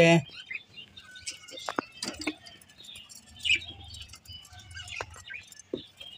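Budgerigars chirping and chattering in short, scattered calls, with a few sharp clicks in between.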